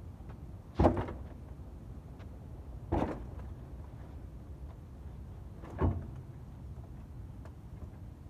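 Three loud thuds, about a second, three seconds and six seconds in, each trailing off briefly, over a steady low rumble.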